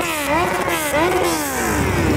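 A motorcycle engine revved in quick repeated throttle blips, about two a second, the pitch rising and falling back each time.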